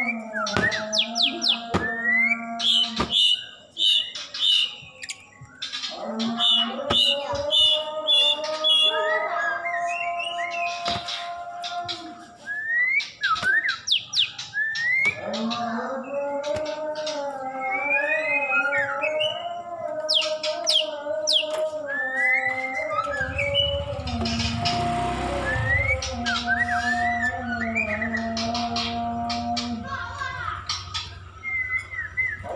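Bahorok white-rumped shama singing: sharp rising whistles and runs of quick repeated high notes. Under the song runs a sustained, slowly wavering droning tone, and a low rumble breaks in a little past the middle.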